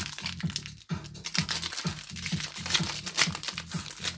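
Foil booster-pack wrapper crinkling and tearing as it is opened by hand, over background music with a steady low beat.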